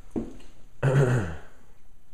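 A man's short wordless vocal sound, breathy at the start and falling in pitch, about a second in, after a brief faint vocal sound near the start.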